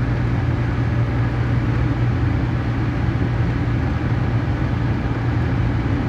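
Steady low engine hum with road noise from a running motor vehicle, unchanging throughout.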